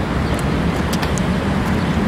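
Street traffic: a car driving through the intersection over a steady hum of road noise.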